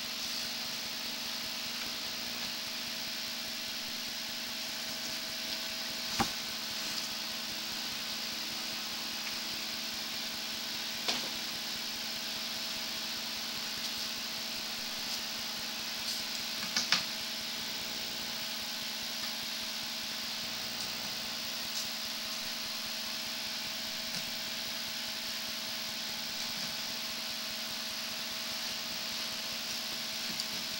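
Steady electrical hum and hiss from a sewer inspection camera rig, with a few sharp clicks spread through it as the camera head is pulled back along the drain pipe.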